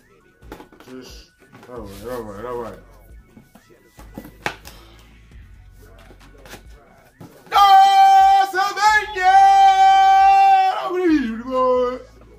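A voice singing: a short wavering phrase about two seconds in, then, from about halfway, a loud long held note that breaks once, resumes, and slides down in pitch near the end.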